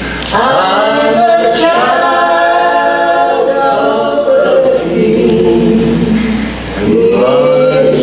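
Voices singing a gospel song together, holding long notes that slide in pitch, with a short break near the end.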